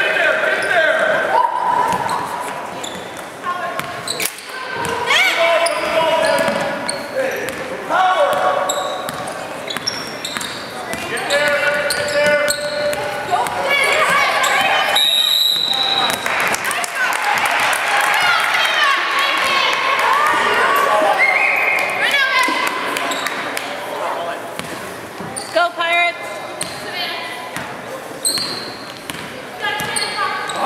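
A basketball bouncing on a hardwood gym floor during play, with players and spectators shouting and calling out, all echoing in a large gymnasium. A referee's whistle blows briefly about halfway through.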